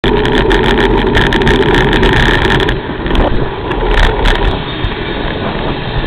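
Wind and road noise from a moving car, with rapid crackles over roughly the first three seconds before the sound goes duller.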